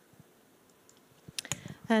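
Near silence, then a few soft keyboard clicks from about a second and a half in as the presentation slide is advanced; a woman starts to speak right at the end.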